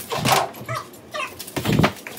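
A heavy punching bag being hit with a stick: dull thuds, the loudest and longest near the end, with short high squeaks between the blows.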